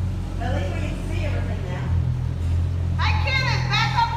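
People's voices inside a brick tunnel, over a steady low hum. A clear high-pitched voice comes in near the end.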